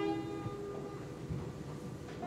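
Banjo chord left to ring, its notes fading away over the first second into a quiet pause before the next strum.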